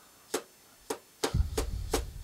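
About five short, sharp taps of a bounce-back (dead-blow) mallet driving a steel bearing cup into a motorcycle's steering headstock. The blows go around the rim a little at a time to keep the cup going in square, not cocked.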